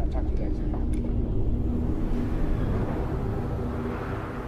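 Indistinct voices over a low, steady rumble, with a few faint clicks in the first second.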